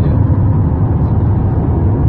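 Steady low rumble of a moving car heard from inside the cabin: road and engine noise while cruising.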